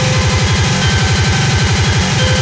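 Speedcore electronic music: a distorted kick drum hammering many times a second, each kick dropping in pitch, under a dense, harsh wall of synth noise.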